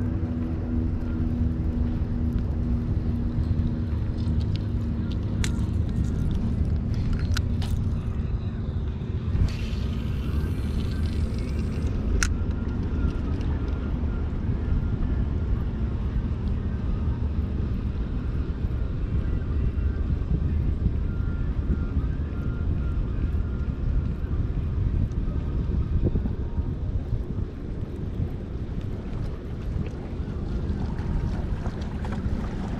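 Steady low rumble of wind and a boat engine: the engine's hum fades out over the first several seconds. A few sharp clicks and a brief hiss come in the middle.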